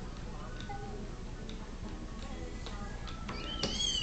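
Children's TV show music playing from a television, with scattered light ticks. Near the end a high squeal rises.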